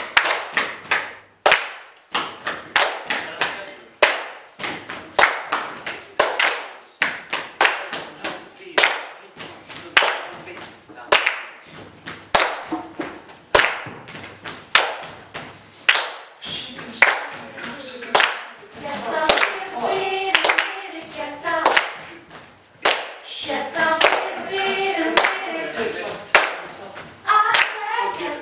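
Group hand clapping, sharp claps at roughly two a second in an uneven rhythm. Over the last third several voices sing along with the claps.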